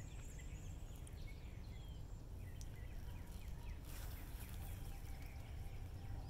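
Faint outdoor ambience: a steady low wind rumble on the microphone with a few faint bird chirps, and a brief rush of noise about four seconds in.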